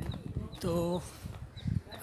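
A man's voice saying one short word, over low rumbling on a phone microphone, with faint high ticks about four times a second.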